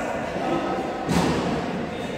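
A badminton racket striking the shuttlecock once, a sharp hit about a second in that echoes in the hall, over background chatter.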